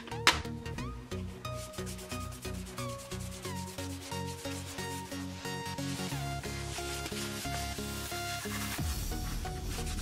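A wet cleaning wipe scrubbing the mesh upper and midsole of a Nike Free Run in quick repeated strokes, with a sharp knock just after the start. Background music with a steady beat plays throughout.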